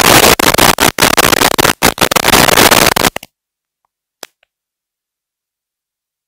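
Loud, harsh burst of static on the audio line, chopped by short dropouts, that cuts off abruptly about three seconds in to dead silence, with one faint click about a second later.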